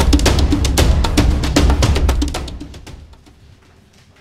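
Background music score driven by fast, heavy drums and percussion over a deep bass, fading out about two and a half seconds in to low room sound.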